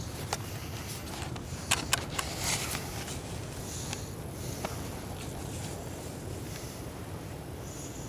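Steady low rumble of wind and surf at the beach, with a handful of sharp clicks and light scrapes in the first five seconds, the loudest about two seconds in.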